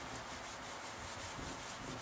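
Whiteboard eraser rubbing back and forth across a whiteboard, wiping off marker writing in steady strokes.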